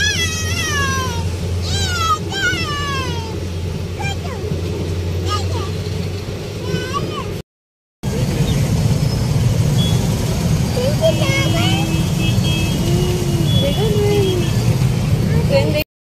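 A vehicle engine idling steadily while a child gives high, falling squeals; after a cut, a train running through a railway level crossing with a loud, continuous rumble.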